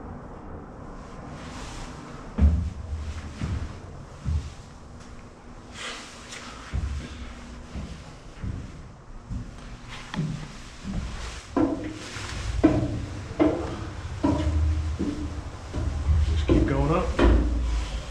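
Scattered thumps and knocks of movement inside a steel ship's passageways, a few of them sharp and loud. Indistinct voices come in from a little past halfway.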